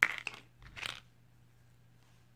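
Scissors cutting through thick yarn: a sharp snip at the start, then a second, softer crunching snip just under a second later.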